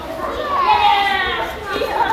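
Children's voices talking and calling out over one another, with the echo of a large hall.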